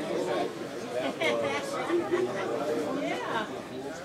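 Background chatter: several people talking at once in a large room, with no one voice clear.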